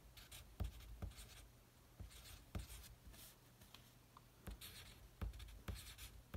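Pencil writing numbers on paper: faint, short scratchy strokes with light ticks of the pencil tip, coming in small bursts.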